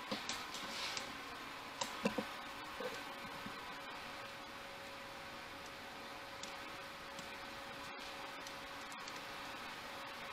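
A few light clicks and knocks during the first three seconds as the camera is handled and moved. After that comes steady room tone with a faint constant hum.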